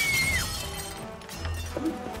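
Film soundtrack: dramatic score music mixed with sound effects, with a brief high tone that drops off about half a second in and a low rumble coming in partway through.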